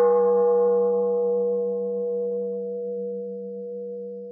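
A struck bell ringing and slowly fading. A brighter shimmer dies away in the first second or two, leaving a steady middle tone over a low, pulsing hum.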